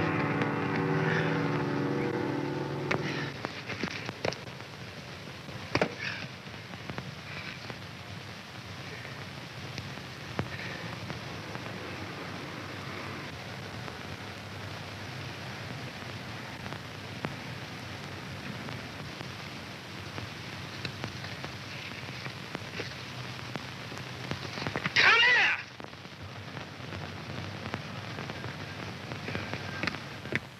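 Surface noise of an old optical film soundtrack: a steady crackling hiss with scattered sharp clicks. Music fades out about three seconds in, and a brief loud sound with a wavering pitch cuts in about 25 seconds in.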